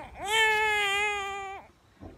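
A young child's voice giving one long, high, wordless call held at a nearly steady pitch for about a second and a half, then stopping.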